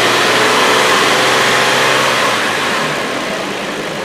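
2007 Hyundai Sonata's 3.3 V6 engine running at a raised idle under the open hood, a steady mechanical hum that eases down slightly in the second half.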